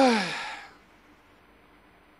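A man's breathy sigh of "oy", falling in pitch and fading out within about a second.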